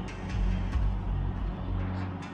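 Low rumbling outdoor background noise with a few faint clicks, in a pause between phrases on a Native American flute; no flute note sounds.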